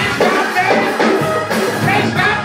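Loud live gospel praise music with a drum kit and tambourine driving the beat.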